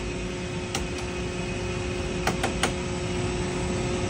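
Metal cargo pallet floor locks on a 747's deck being flipped up and latched: a single click about a second in and three quick clicks about halfway through, over a steady machinery hum in the cargo hold.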